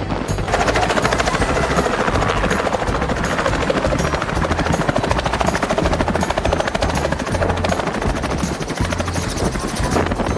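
Small helicopter flying in close and landing: its rotor and engine run loud and steady, with fast even blade beats. The sound grows louder about half a second in.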